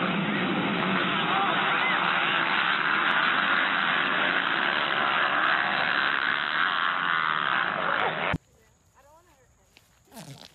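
A pack of motocross dirt bikes racing off the start, many engines revving together in a dense, steady din. It cuts off suddenly about eight seconds in.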